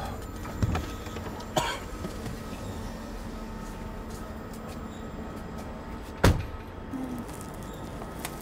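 Car door handled as a man gets out of a sedan: a couple of soft clicks near the start, then one solid thump of the door shutting about six seconds in, over faint steady background music.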